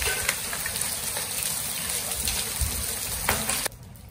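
Heavy rain pouring onto a flooded concrete courtyard: a steady hiss with scattered sharp taps. It cuts off suddenly near the end.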